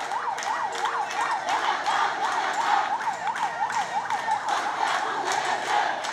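A fast yelping siren, its pitch sweeping up and down about four times a second, fading near the end. It is heard over a noisy street crowd.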